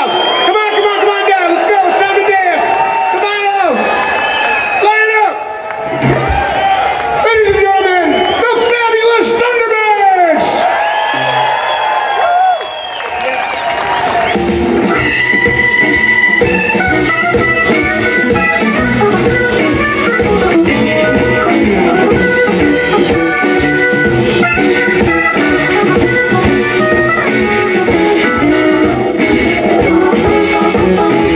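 Live blues band: an electric guitar plays an unaccompanied intro full of bent, gliding notes, then the bass, drums and organ come in together about fourteen seconds in with a steady groove.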